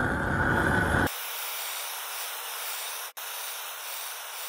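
Handheld gas torch flame running over sausage skins. For about the first second it is loud with a low rumble, then it changes to a thinner, steadier hiss. There is a brief dropout about three seconds in.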